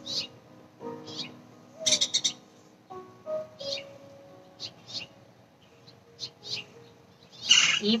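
Birds chirping outdoors in short calls every second or so, with a denser burst of chirps about two seconds in.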